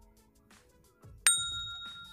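A single bright bell ding, the notification-bell sound effect of a subscribe-button animation. It is struck a little past halfway and rings out, fading over about a second.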